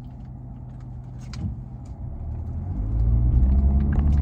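Car engine running, heard from inside the cabin as a low steady hum that grows louder about three seconds in, with a few faint clicks.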